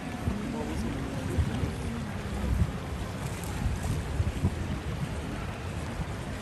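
Wind rumbling and buffeting on the microphone, over the background chatter of people on a busy beach. The voices are clearest in the first two seconds or so.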